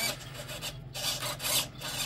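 RC boat steering servo running in short bursts as it swings the rudder linkage back and forth, a rasping gear-and-linkage sound over a faint steady hum.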